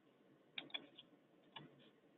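Near silence with a faint hiss and about four short, faint clicks in the middle.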